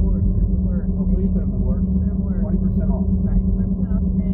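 Steady low rumble of a car under way, heard from inside the cabin, with faint voices talking over it.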